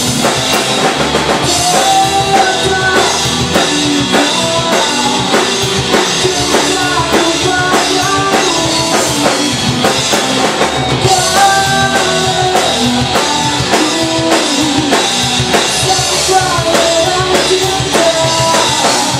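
A rock band playing live: a drum kit keeps a steady beat under electric guitars and keyboard.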